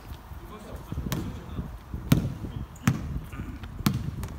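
Basketball being dribbled on a wooden gym floor: four thumping bounces about a second apart.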